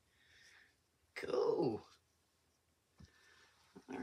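A woman's voice: a soft breathy sound, then a short wordless vocal sound with falling pitch, like an "ooh" or "hmm", about a second in. A faint click comes near the end.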